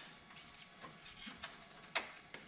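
Faint small clicks and rustling of hands working wiring under a car dash, with one sharper click near the end.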